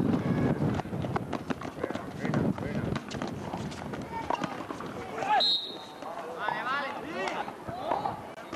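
Basketball game on an outdoor concrete court: players' running steps and the ball bouncing as sharp knocks, with players shouting. A short, high referee's whistle blows about five seconds in.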